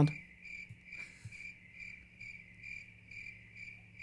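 Crickets chirping in an even, repeating rhythm: the comedic 'crickets' sound effect for an awkward silence.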